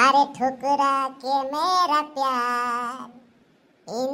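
A high-pitched voice exclaims "arre" and then sings a drawn-out melodic phrase, unaccompanied, with long held notes. The singing breaks off about three seconds in and resumes right at the end.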